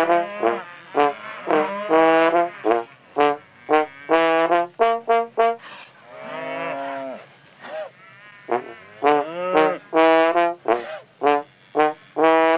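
Trombone playing a lively tune of short, separate notes in quick succession, broken by one longer tone that swells and bends about six seconds in.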